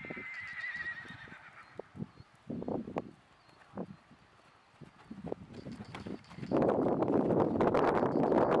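A horse whinnies once at the start, a wavering high call lasting about a second and a half. Then come the scattered hoofbeats of a horse trotting on a sand arena. In the last second and a half a loud rushing noise sets in as the horse passes close by.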